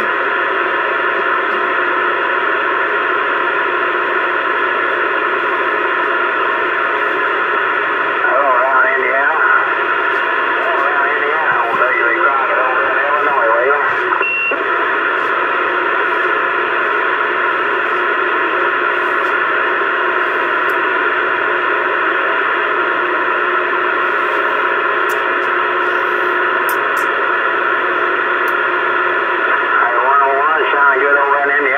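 A Uniden CB radio's speaker hissing with steady static and several held whistle tones. Faint, garbled voices come through briefly about eight and eleven seconds in.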